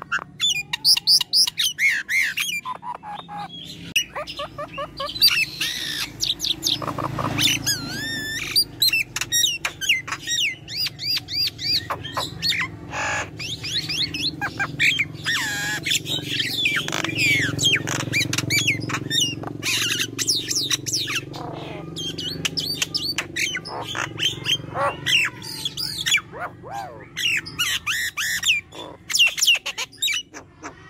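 Myna singing continuously: a rapid, varied run of clear rising and falling whistles mixed with short harsh squawks and chirps, with hardly a pause.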